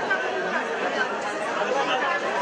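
Speech: a woman addressing an audience through a microphone in a large hall, with chatter around it.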